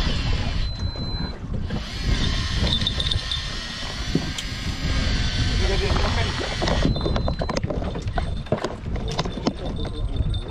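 Wind buffeting the microphone on a small fishing boat at sea, a loud irregular rumble, with indistinct voices and a few light clicks and knocks in the second half.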